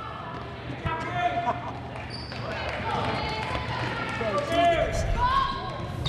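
Live basketball play on a hardwood gym court: a basketball bouncing, with short knocks from the ball and players' feet, over scattered shouts and chatter from players and spectators.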